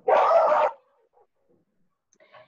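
A dog barks once, a single short loud bark near the start, carried over a video-call connection.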